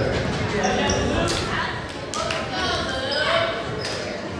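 Indistinct voices and chatter of players and spectators echoing in a school gymnasium, with a few sharp knocks of a ball bouncing on the hardwood floor.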